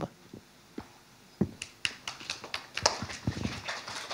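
Handling noise of a handheld microphone being passed from one person to another. After a quiet second and a half comes an irregular string of knocks and clicks.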